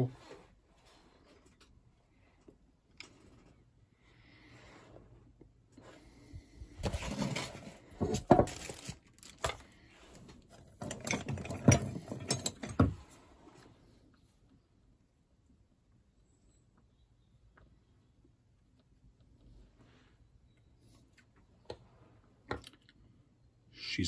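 Someone puffing on a freshly lit tobacco pipe: two clusters of quick soft pops and clicks, about seven and eleven seconds in, with quiet between.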